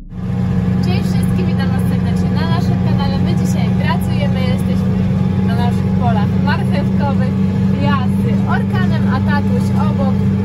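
Tractor engine running steadily, heard from inside the cab as a loud, constant low drone.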